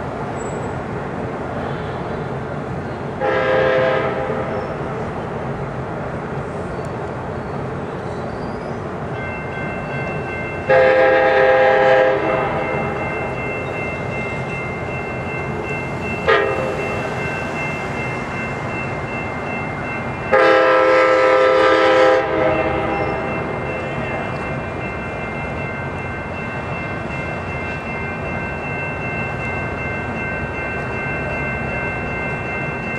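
Amtrak diesel passenger locomotive sounding its air horn in four blasts, short, long, very short and long, roughly the pattern of a grade-crossing signal, over the steady rumble of the approaching train. A bell rings steadily from about ten seconds in.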